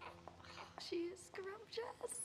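Soft, hushed speech in short broken phrases, close to a whisper.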